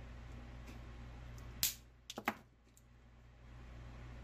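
Small metal clicks of hand pliers and orthodontic wire being handled: one sharp click about one and a half seconds in, then a quick run of three or four, over a low steady hum.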